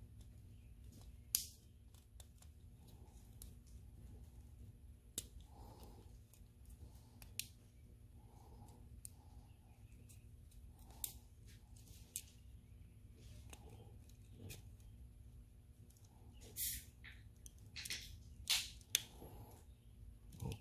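Scattered small plastic clicks as a pick works the clips of a wiring-harness connector plug, over a faint low hum; a few louder clicks come near the end.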